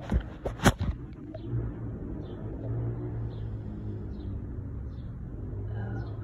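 A few knocks and rustles in the first second as the phone brushes through tomato foliage, then a steady low engine-like hum, with faint short bird chirps every so often.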